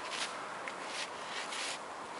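Brown bear cub scraping and digging in dry dirt and leaf litter at the foot of a tree: a handful of short, irregular scratchy strokes.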